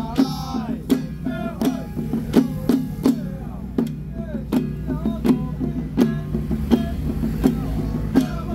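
Long-handled single-headed ritual hand drums of a Taoist little Dharma troupe, beaten together in a steady beat of about two to three strokes a second, under chanting voices of a temple rite.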